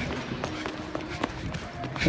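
Running footsteps on a hard indoor floor, with the handheld camera jostled along. A few sharp knocks stand out among the steady rustle.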